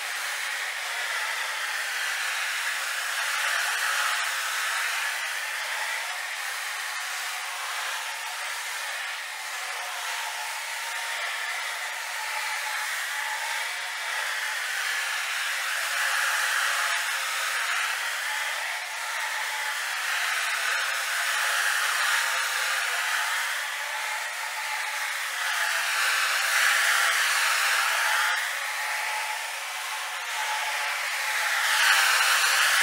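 A 175-rpm rotary floor machine running with a pad on carpet, a steady motor whir and pad scrubbing that swells and fades as the machine is swung from side to side. This is the agitation pass of a very-low-moisture (VLM) carpet clean.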